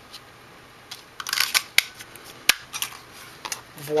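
A handheld 1 3/8-inch circle craft punch clicking as it is pressed through cardstock and released. A run of sharp clicks and snaps with paper handling, the sharpest about two and a half seconds in.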